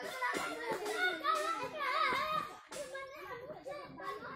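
A troop of macaques calling: many high-pitched squeals and coos overlapping, loudest in the middle, with a short lull near the end.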